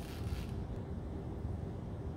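Quiet room tone: a low, steady hum with no distinct events.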